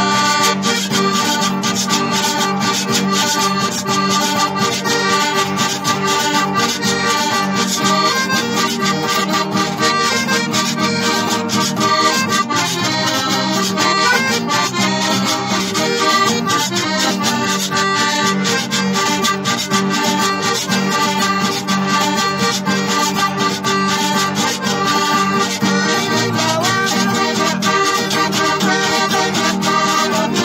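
Piano accordion playing a continuous melody, with a drum and cymbal keeping a steady beat.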